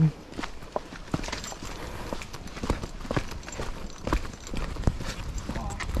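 Footsteps of several people walking on a dry, leaf-littered dirt trail, an irregular run of crunching and scuffing steps.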